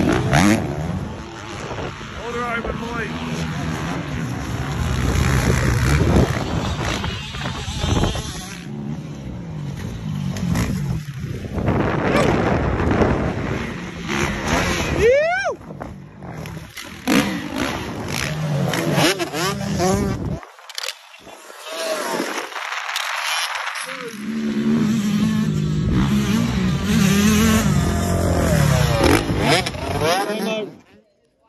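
Motocross dirt-bike engines revving up and down as riders accelerate along the track and over jumps, the pitch rising and falling. The engine sound drops away for a few seconds past the middle. A person laughs early on.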